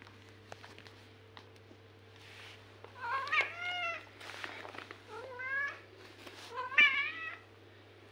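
A long-haired cat meowing three times: a longer meow about three seconds in, a shorter one around five seconds, and a third near the end, each sliding in pitch. A thump comes with the last meow, which is the loudest moment.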